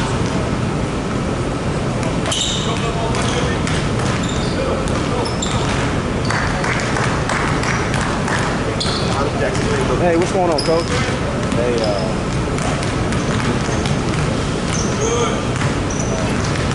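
Basketballs bouncing on a hardwood court as several players dribble and shoot, with repeated short thuds and scattered short high squeaks, over a steady low rumble and voices echoing in a large hall.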